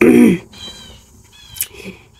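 A woman clearing her throat once, a short voiced sound falling in pitch, followed by faint high chirping in the background.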